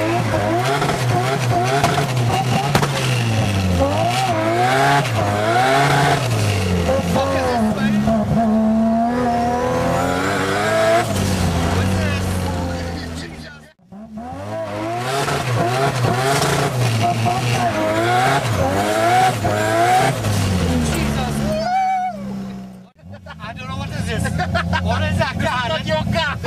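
Turbocharged, bridgeport-ported 20B three-rotor rotary engine in a first-generation RX-7, heard from inside the cabin, pulling hard: its pitch climbs and drops back again and again as it runs up through the gears. The sound cuts out abruptly twice, about 14 and 23 seconds in.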